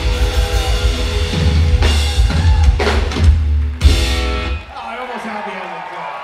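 A live rock band of acoustic guitar and drum kit playing the last bars of a song, with hard drum hits between about two and four seconds in. The band stops a little under five seconds in, leaving a quieter ringing tail.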